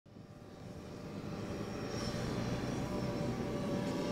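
A steady rumbling roar of engine-like noise that swells in over the first second and a half and then holds.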